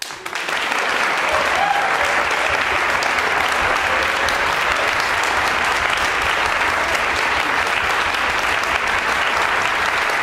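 Audience applauding: clapping breaks out suddenly out of silence, fills in within about half a second and then holds steady and full.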